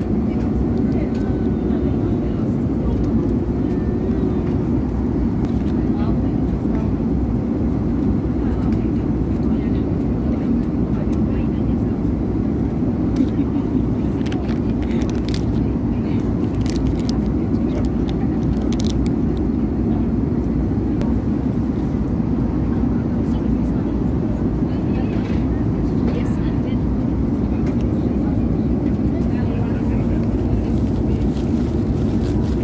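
Steady low rushing cabin noise of an Airbus A330 airliner, even in level throughout. About halfway through, a run of short crinkling clicks comes from a paper wrapper being handled close by.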